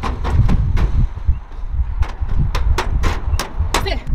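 Footsteps clanging on aluminium bleacher seats as a runner climbs them, about three to four sharp strikes a second with a short pause, over a low rumble of wind on the microphone.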